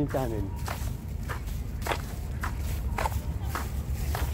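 Footsteps of a person walking at a steady pace, a little under two steps a second.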